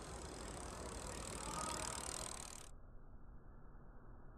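Faint noise of bicycles riding on an asphalt path, a steady hiss of tyres and moving air, which cuts off abruptly under three seconds in, leaving only a quieter muffled hiss.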